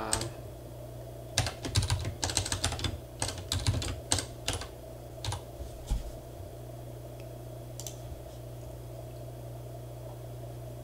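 Typing on a computer keyboard: a quick run of keystrokes for about three seconds, then a few scattered single clicks.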